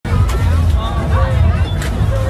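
Several people's voices talking and calling out over one another, with a loud, steady low rumble underneath.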